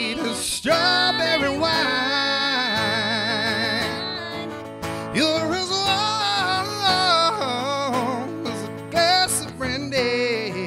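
A man singing a slow country ballad with long, wavering held notes, over a strummed acoustic guitar.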